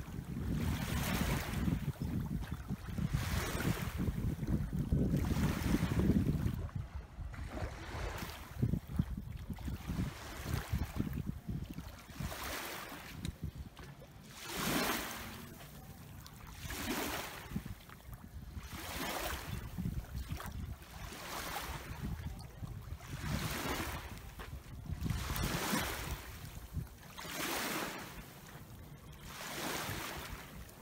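Small waves lapping at the shoreline in a regular rhythm, a splash every second or two, with wind on the microphone. An outboard motor's low rumble is strong in the first few seconds as the deck boat idles off its trailer, then fades as it moves away.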